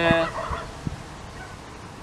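A man's voice trailing off in a short drawn-out hesitation sound, then a pause with low steady outdoor background and two faint soft clicks.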